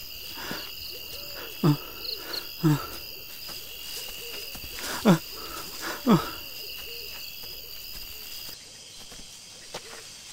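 Owl hoots in a night-forest ambience: four short calls, each dropping steeply in pitch, in two pairs about a second apart. Under them runs a steady high insect drone that cuts off near the end.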